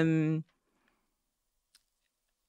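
A woman's drawn-out hesitation "um" for the first half second, then near silence with one faint click near the end.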